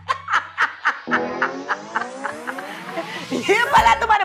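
A woman laughing hard in quick repeated bursts. Under it a comic sound effect glides up in pitch over about two seconds, and voices come in near the end.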